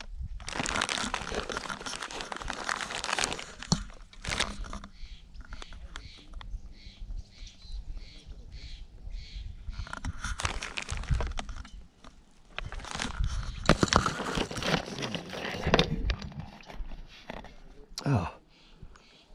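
Plastic bag and tackle packaging crinkling and rustling as they are handled, in several bursts with a quieter stretch in the middle.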